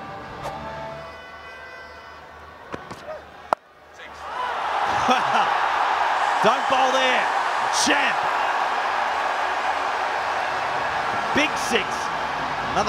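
Stadium crowd cheering loudly, swelling from about four seconds in as a batsman hits a six into the stands, with scattered shouts and whistles over the roar. Before it the crowd is fainter, cut off by a sharp click.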